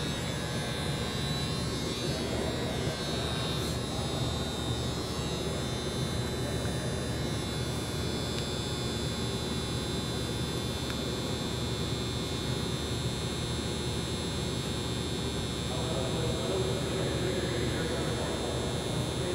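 A steady droning hum with a low rumble underneath and a faint thin whine above it, unchanging throughout.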